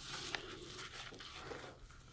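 Faint crinkling and tearing of a small paper package being picked open by hand.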